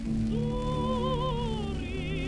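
Soprano voice singing a long held note with wide vibrato over instrumental accompaniment, the pitch falling near the end. It is heard from a 1934 lacquer radio transcription disc.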